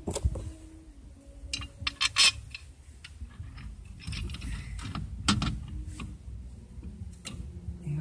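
Irregular metallic clicks and clinks of 17 mm bolts and hand tools being handled and fitted at a Lada Niva's rear axle flange and brake backing plate. There is a quick cluster of clinks about two seconds in and single sharper clicks around five and seven seconds.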